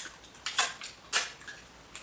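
A few short, sharp clicks and smacks from people eating by hand at the table, the clearest about half a second and a second in.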